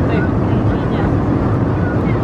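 Steady airliner cabin drone in flight: engine and airflow noise heard inside the cabin as an even low rumble.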